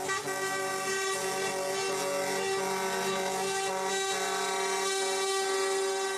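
Truck air horn sounding one long, steady blast that cuts off suddenly.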